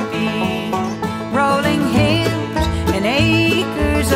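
Bluegrass band playing an instrumental passage of plucked strings, with a lead line that slides between notes. Low bass notes come in about halfway through.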